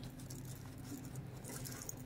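Faint rustling and a few light ticks of handling as a small bag is opened, over a low steady hum.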